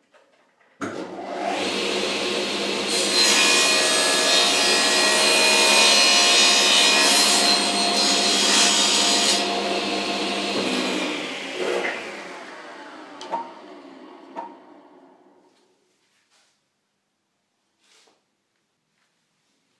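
Table saw starting up suddenly and running, then its blade ripping a thin strip from a board for about six seconds, the loudest part. The saw is then switched off and its blade spins down over several seconds, with two light knocks as it slows.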